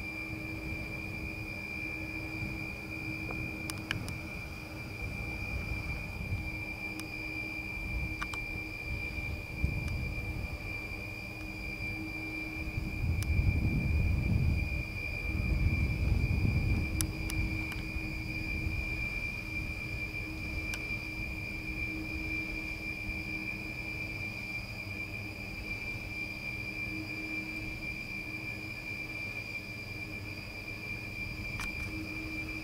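PowerWind wind turbine running, heard from the foot of its tower: a steady high-pitched whine over a low hum. About halfway through, a low rumble of wind on the microphone swells and fades.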